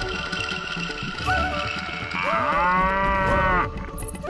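A cow mooing once, one long call of about a second and a half that starts about two seconds in, over background music.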